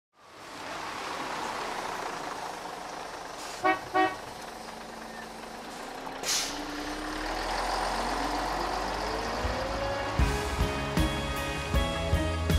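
Bus sound effects over a steady engine and traffic noise: two short horn toots about four seconds in, a brief hiss, then a rising engine note. Plucked guitar music starts about ten seconds in.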